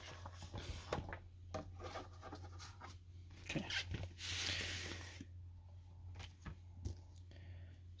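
A vinyl LP and its paper record sleeves being handled: scattered light taps and rustles, with a longer sliding rustle about four seconds in.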